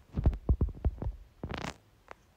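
Fingertips tapping on a phone's touchscreen keyboard, heard through the device's own microphone as a quick run of about seven dull taps, then a short rustling burst just past halfway.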